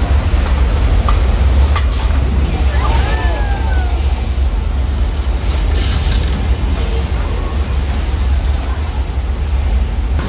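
Staged flash flood on a studio backlot set: a torrent of water released down a sloping village street, rushing and splashing loudly and steadily, with a deep low rumble underneath.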